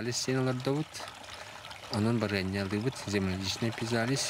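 A man speaking in three short phrases over a steady trickle of water from a small tiered garden fountain.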